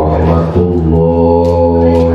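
A man chanting an Islamic prayer in Arabic into a handheld microphone; about half a second in he holds one long steady note.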